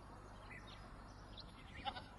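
Goats bleating faintly, a few short calls, the clearest one near the end.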